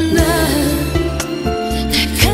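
Korean pop ballad: a woman singing with vibrato over a band accompaniment of steady bass and occasional drum hits.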